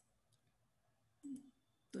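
Faint computer mouse clicks: one at the start, another a moment later, and a couple more about a second and a quarter in, over near silence.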